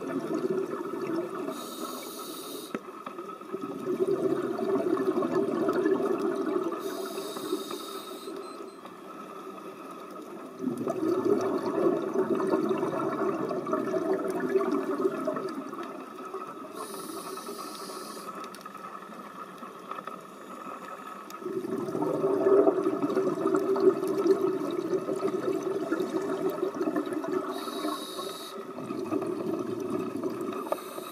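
Scuba diver breathing through a regulator underwater. Each breath is a short high hiss on the inhale followed by a long bubbling rush on the exhale, about four breaths in all.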